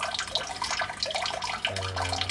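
Water running and splashing steadily into the fish tank from the aquaponics siphon outlet pipe, a continuous bubbling, trickling wash of irregular splashes.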